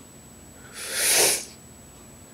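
A person's single loud, forceful burst of breath through the nose and mouth, like a sneeze or a hard hiss. It swells about a second in and dies away within half a second.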